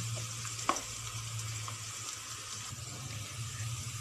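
Minced garlic sizzling steadily in hot oil in a pan as it fries to golden brown, with one sharp click just under a second in.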